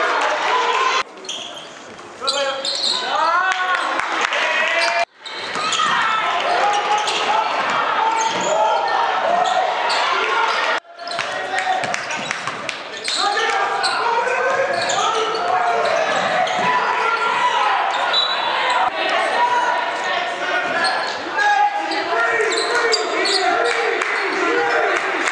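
Basketball game in a school gym: a ball bouncing on the hardwood court among the shouts and chatter of players and spectators, echoing in the hall. The sound drops out abruptly a few times.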